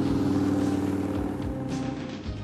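Film opening-credits soundtrack: music with a steady motor-engine sound under it, cutting in suddenly.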